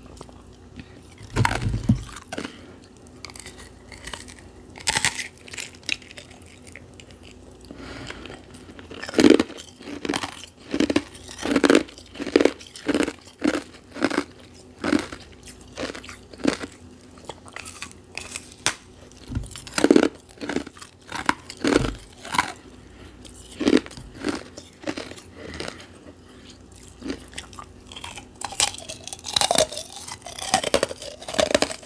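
Close-miked crunching bites and chews of refrozen carbonated ice, crisp and crackly. A few single bites come first, then from about nine seconds a steady run of crunching chews, one or two a second.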